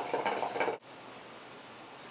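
Hookah water bubbling as smoke is drawn through the hose, a rapid gurgle that cuts off suddenly under a second in, leaving faint room hiss.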